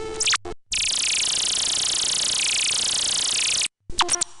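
Software effects synthesizer (Radio Active Atomic Effects Synth): a short burst of synthetic notes ending in a falling sweep. Then a loud, steady high-pitched hiss of noise holds for about three seconds and cuts off sharply near the end.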